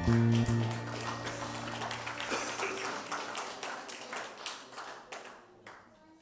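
A band's last held chord on guitars and bass, cut off within the first second, followed by scattered hand-clapping from a small congregation that thins out and fades away.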